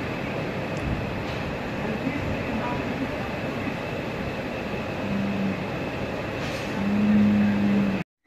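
Steady whirring noise of large overhead barn ventilation fans, with a faint high whine running through it. A low held tone comes in briefly about five seconds in, and again for about a second near the end, where it is the loudest sound.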